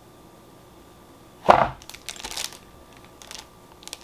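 Handling noise from unboxed merchandise and its packaging: a sharp knock about one and a half seconds in, followed by brief crinkly rustles.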